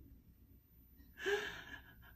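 A woman's short, sharp gasp about a second in, sob-like, fading within half a second.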